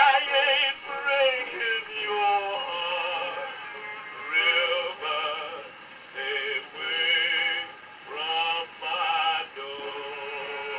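A male singer with orchestra on an old shellac record played on a gramophone, singing long held notes with vibrato in phrases broken by short pauses; the sound is narrow and dull, with little top end.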